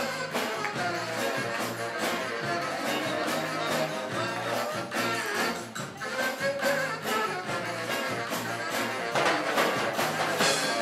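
Live band playing an uptempo song: two saxophones over electric bass guitar and drums, with a steady beat and a heavy bass line.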